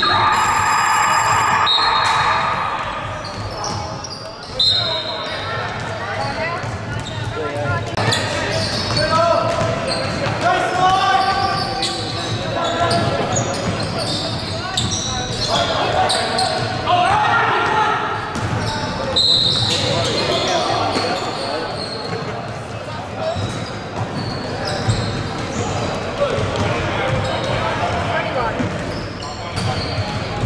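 Basketball game in an echoing gym: the ball bouncing on the hardwood court as it is dribbled, with players and spectators calling out.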